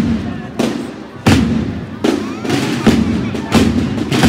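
Procession drums beating a slow march, a sharp loud stroke about every two-thirds of a second, each one ringing away before the next.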